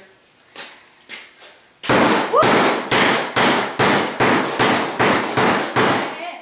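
A hammer striking the iPod's glass screen layer on a wooden workbench over and over: a few faint taps, then about two seconds in a fast run of loud, sharp blows, roughly three a second.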